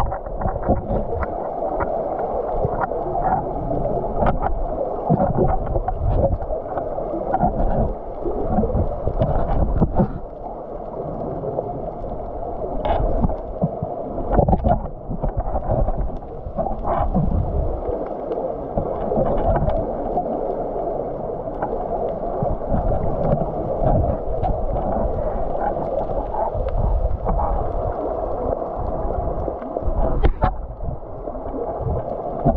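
Muffled sloshing and gurgling of seawater heard from a camera held under the surface, dull and lacking any high sounds, with scattered brief splashes and knocks as the camera moves through the water.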